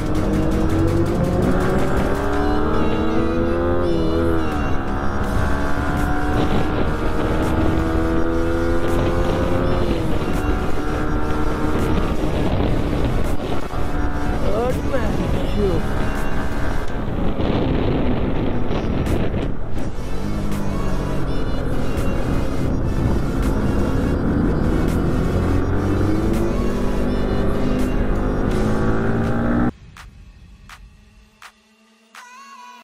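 Sport motorcycle engine accelerating on the road, its pitch climbing steadily and dropping at each upshift, with heavy wind and road noise on the mounted camera. It cuts off suddenly near the end.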